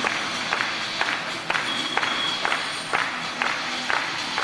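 Stadium PA music playing with a steady beat of about two hits a second.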